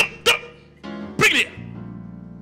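Three short, loud shouts from a man's voice, the last one longer with a falling pitch, over sustained keyboard chords.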